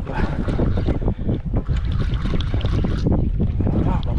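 Wind buffeting the microphone on a boat at sea, a steady, loud low rumble over the noise of the open water.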